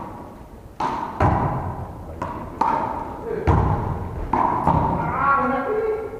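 One-wall handball rally: the ball struck by bare hands and slapping off the front wall and the wooden gym floor, about seven sharp smacks over four seconds, each echoing briefly in the large hall.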